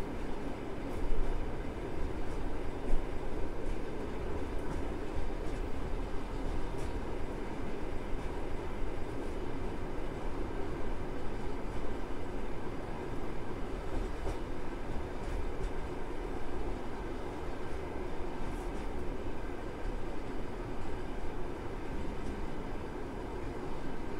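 Passenger railway carriage running along the track: a steady rumble of wheels on rails, with a couple of sharper knocks in the first few seconds.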